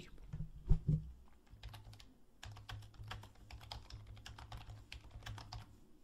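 Typing on a computer keyboard: a quick, uneven run of faint keystrokes, entering a name into a form field.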